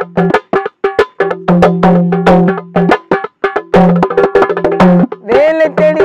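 Hand-played dholak barrel drum beating a fast rhythm in an instrumental break between sung lines, over a steady low drone. A man's singing comes back in about five seconds in.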